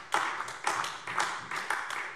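Brief scattered applause from a few people in a large chamber: individual claps, with the loudest about twice a second, thinning out near the end.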